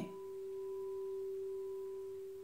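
Frosted quartz crystal singing bowl sounding a single pure, steady tone with a faint higher overtone, swelling slightly and then easing.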